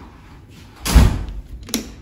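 Wooden bathroom door being opened: one loud thud about a second in, then a lighter knock.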